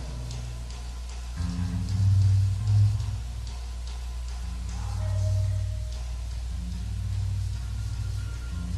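Studio band playing an instrumental backing-track take: low bass notes changing every second or so, with light drums and guitar.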